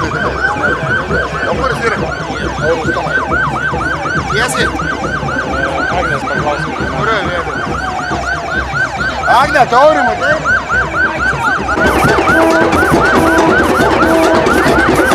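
Police siren on a rapid yelp, its pitch rising and falling about four times a second, with a slower, wider swoop near the middle. Music comes back in under it near the end.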